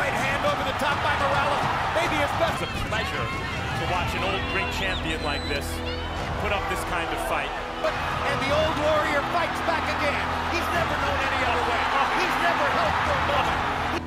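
Background music with steady held low notes, laid over the noise of a boxing arena: many voices shouting and calling over one another.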